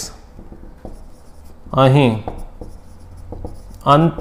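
Marker pen writing on a whiteboard: a run of short, faint strokes, broken about two seconds in by a single short spoken word.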